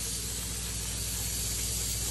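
Upholstery extraction machine's vacuum running steadily: a constant airy hiss over a low, even hum.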